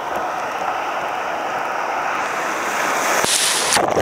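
Surf washing in the shallows, heard close at water level as a steady rushing hiss. About three seconds in, a breaking wave reaches the microphone and the hiss turns suddenly louder and brighter.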